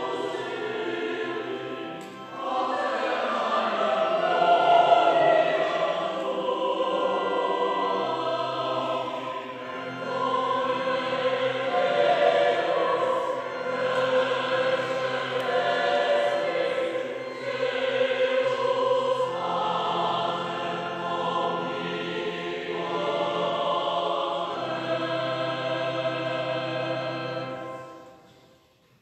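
Choir singing slow, sustained phrases over long held low notes, with short breaks between phrases; the singing ends right at the close.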